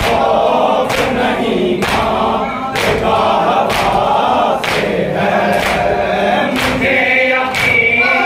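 A large group of men chanting a noha, a Muharram lament, in unison, with chest-beating (matam) struck together as a sharp slap about once a second.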